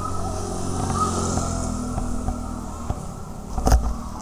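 A motor vehicle's engine hum passing close by, fading away after about three seconds, followed by a single loud thump near the end.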